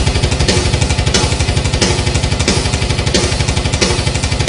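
Black metal instrumental intro: very fast, even kick-drum beats under a dense wall of distorted guitar.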